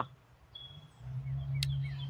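Birds chirping faintly in the background, with a steady low hum that comes in about a second in and a single sharp click near the end.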